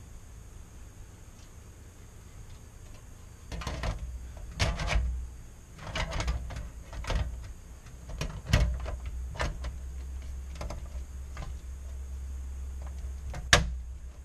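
Sheet-metal back cover of an LCD monitor being laid onto the chassis and pressed into place by hand: a string of irregular knocks and scrapes of metal, ending in one sharp click near the end. Before the knocks start there are a few seconds of low hum.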